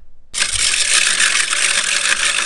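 Slide-animation sound effect: a loud, steady, grainy noise that starts about a third of a second in.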